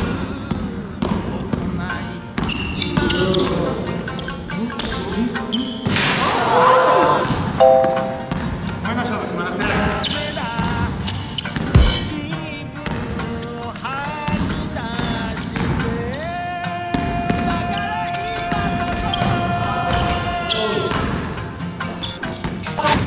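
A basketball being dribbled and bounced on a wooden gym floor during one-on-one play, with repeated sharp bounces, over edited background music that holds a long note near the end.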